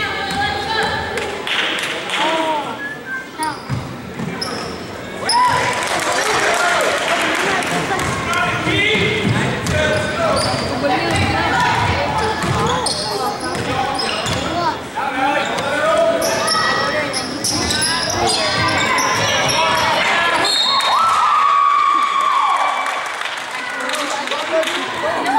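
Basketball dribbled and bouncing on a hardwood gym floor during live play, amid continual shouting and chatter from players, coaches and spectators echoing in the gym.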